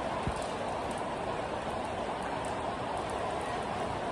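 Heavy rain falling in a downpour, a steady even hiss.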